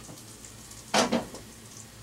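Packaging rustling as a wrapped tool is handled: a short double rustle about halfway through, otherwise quiet room noise.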